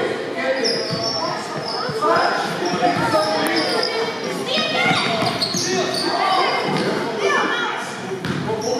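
Basketball bouncing on a gym's wooden court during live play, with sneakers squeaking and players' and spectators' voices, all echoing in a large hall.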